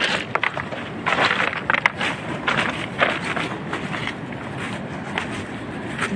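Footsteps crunching on a shingle beach of loose rounded pebbles, irregular steps about one or two a second, thinning out near the end, over a steady background rush.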